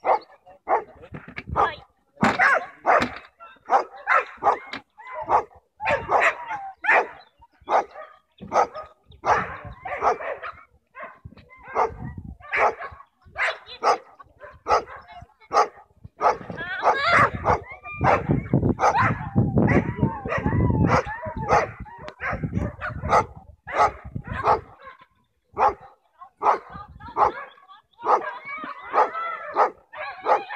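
A dog barking over and over: short, sharp barks about one or two a second, with a busier run of calls around the middle.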